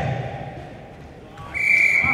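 A referee's whistle sounding one long, steady, high blast that starts about one and a half seconds in, after voices on the court fade out.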